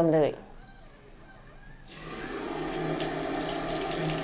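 Water from a scrub-sink tap running onto hands and forearms, starting about two seconds in and building to a steady rush. It is the plain-water rinse that washes the povidone-iodine scrub off after the first round of surgical hand scrubbing.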